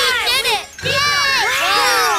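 Several cartoon children's voices cheering and shouting together in a victory cheer, in two bursts with a short break just under a second in.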